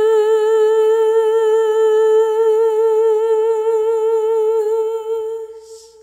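A woman's voice, unaccompanied, holds one long final note with vibrato, fading out about five seconds in.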